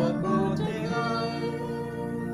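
A man singing a hymn in long held notes, with an instrumental accompaniment.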